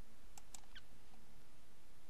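Two faint, short clicks about half a second in, followed by a brief falling squeak, over a steady background hiss.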